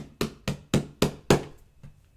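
A quick, even series of light taps, about four a second, from fingers on the pages of an open book; they thin out and stop shortly before the end.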